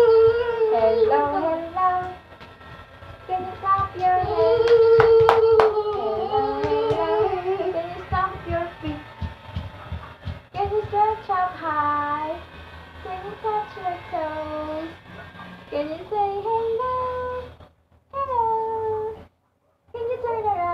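A child singing a tune without clear words in long, held notes that rise and fall, with a few sharp clicks about five seconds in.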